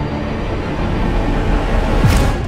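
Dark cinematic soundtrack: a dense low rumble and drone that swells slightly, ending in a sharp hit with a whoosh as a transition.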